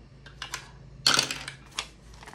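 A die clattering down a small dice tower and landing in its tray: a few light clicks, one loud brief clatter about a second in and a last click near the end, with paper bills handled on the desk.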